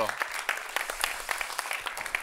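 Audience applauding: many hands clapping at once in a steady patter.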